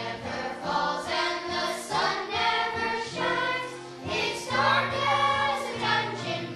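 Children's choir singing a song together on stage, the sung phrases swelling and easing about once a second.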